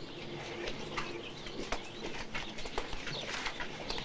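Birds chirping in the background, a steady scatter of short, quick calls, with a faint lower cooing note in the first second.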